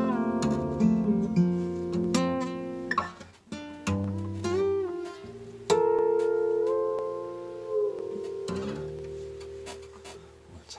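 Acoustic guitar played with both hands on the fretboard in a tapping style: ringing, overlapping notes, some sliding in pitch. The playing thins out about eight seconds in, leaving one note ringing.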